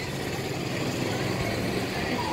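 Steady street traffic noise with a low engine hum.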